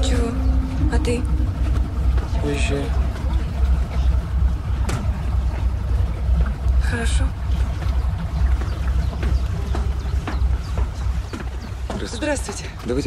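Low, steady rumble of a river boat's engine, with brief snatches of voices over it.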